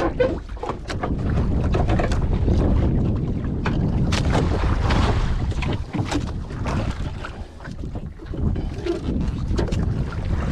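Wind buffeting the microphone and sea water washing against a small boat's hull, a steady low rumbling noise. Scattered knocks and rustles come from the line and the boat being handled.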